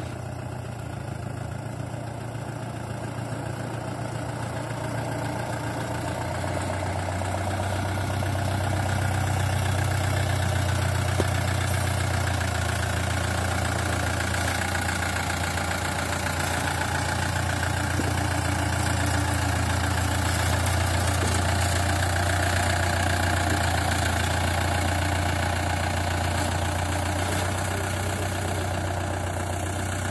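Mahindra Bolero SUV's engine running at low revs as it crawls slowly, a steady low hum that grows louder about six to ten seconds in as it comes closer, then eases a little near the end.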